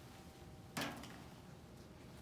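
Quiet room tone with one short, sudden sound about three-quarters of a second in, fading within half a second.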